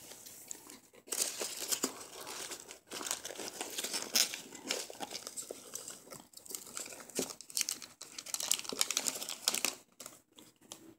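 Dry crinkling and rustling as a hand rummages through foam packing peanuts in a cardboard box, in irregular spells with a few short pauses.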